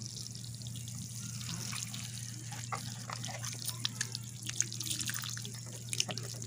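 Water sprinkling from a watering can's rose onto potting mix in a plastic tub: a patter of many small drops and trickles, busier in the second half. The mix is being wetted before the seeds are sown.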